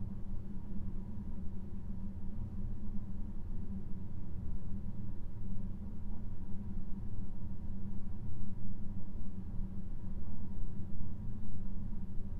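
A low, steady rumbling noise with a faint thin steady tone above it, before any music comes in.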